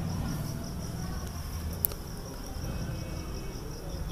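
Crickets chirring steadily in a high, pulsing trill over a low background rumble, with one sharp click near the middle.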